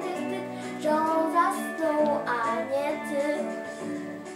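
A girl's voice singing the closing notes of a lullaby over instrumental accompaniment.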